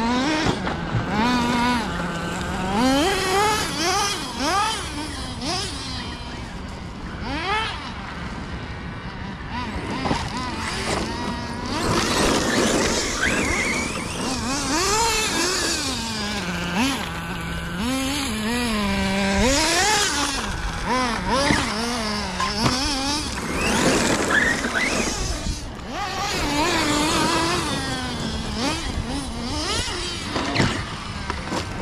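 Electric RC cars' brushless motors whining, the pitch sliding up and down again and again as they accelerate and brake, with bursts of tyres scrabbling on gravel.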